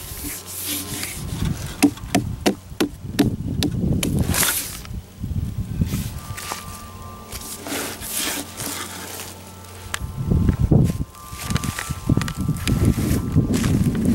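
A hand tapping and rubbing the rind of a large watermelon: a quick run of sharp knocks a couple of seconds in, then rustling and handling noise with low rumbling surges near the end.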